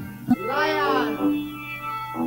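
Live rock band playing: a wailing note bends up and falls back about half a second in, then gives way to held low notes.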